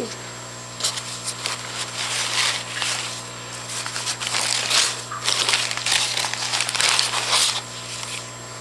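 Crumpled newspaper packing in a cardboard shipping box rustling and crinkling in irregular bursts as it is rummaged through.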